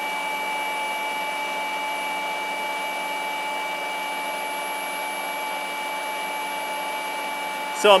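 Two rotary polishers, a Hercules 20V brushless cordless and a Flex, running free on a bench at a steady speed. The sound is an even motor-and-fan rush with several steady whining tones over it.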